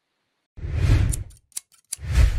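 Scissors cutting through paper, starting about half a second in: a crunchy cut, a few sharp snips, then a second cut at the end.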